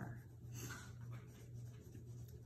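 Quiet room tone: a steady low hum, with a faint brief rustle of paper about half a second in.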